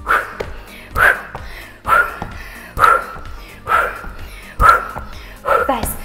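A woman calling out short, clipped 'tap' cues in an even rhythm, seven in all, a little under a second apart, pacing plank shoulder taps over background workout music.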